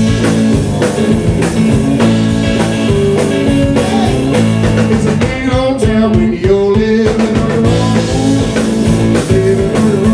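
A blues-rock trio of electric guitar, bass guitar and drums playing live. A wavering, bending line stands out around the middle.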